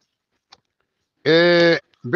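A man's voice holding one flat-pitched syllable for about half a second, starting more than a second in after a pause.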